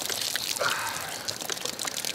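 A steady stream of liquid pouring and splashing onto a person, played as someone urinating on them from above.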